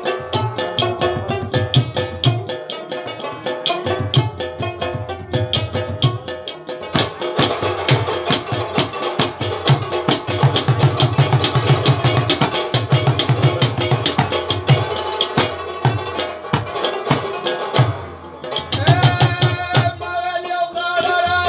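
Instrumental Pashto folk music: fast hand-drumming on a mangay (clay pot drum) and a hand drum under a plucked rabab melody, with a brief lull in the drumming near the end.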